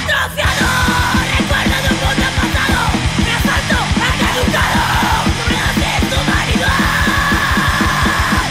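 Hardcore punk song with shouted vocals over a full band and fast drumming. There is a short break right at the start, and a long held shout near the end.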